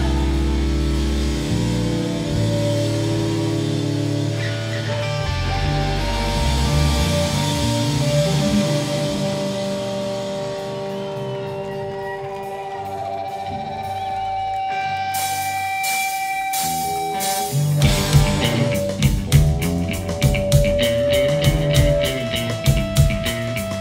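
Live rock band playing: electric guitars and bass hold ringing chords and notes over a quieter, drum-light stretch, then drum strokes come in about 15 s in and the full band with drum kit kicks back in hard about 18 s in.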